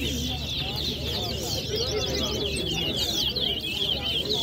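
Caged towa towa seed finches singing in a contest: a fast, unbroken stream of high, quick twittering notes, with a murmur of crowd voices underneath.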